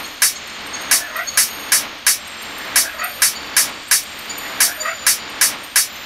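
Trap metal instrumental beat in a stretch without its heavy bass: a repeating pattern of sharp drum hits, two to three a second, over a steady noisy, distorted-sounding haze.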